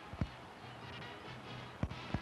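Faint background music and a steady low hum, with two short low thumps about a second and a half apart.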